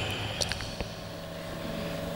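A pause between phrases of amplified speech: low steady background noise with a faint hum and a few soft clicks.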